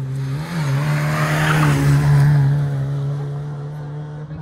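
Rally car driving past at speed on a tarmac special stage, its engine held at high revs with a brief rise in pitch about half a second in. The sound peaks about two seconds in and then fades as the car pulls away.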